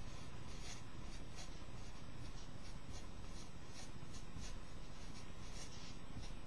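Felt-tip marker writing on paper, a quick run of short, irregular strokes as letters and numbers are drawn.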